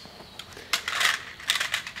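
A few light clicks and small knocks over a low outdoor hiss, spaced irregularly through the middle and later part.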